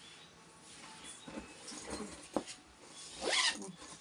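A leather duffel bag being handled: soft rustling and a sharp click of its hardware, then its zipper pulled open a little after three seconds in.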